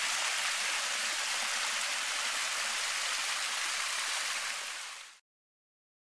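Spring water spilling over a small rock ledge into a pool: a steady splashing rush that fades out quickly about five seconds in.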